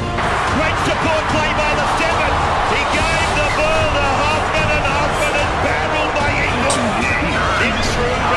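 Rugby league highlight soundtrack: a TV commentator's voice over music, with a couple of sharp clicks near the end.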